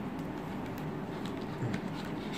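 Steady background hiss with a few faint clicks from a boxed phone case being handled.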